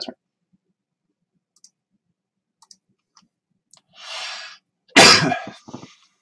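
A few faint clicks, then a sharp breath in about four seconds in, followed by one loud cough near the end.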